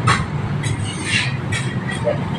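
Paper and plastic crinkling in short rustles as a burger is wrapped by a gloved hand, the longest rustle about half a second to a second in, over a steady low rumble of traffic.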